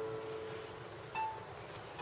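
Piano heard faintly from outside the boat's cabin: a held note dying away, then a single short higher note a little after a second in.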